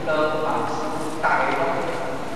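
Speech only: a person lecturing continuously, in a recording with a faint hiss.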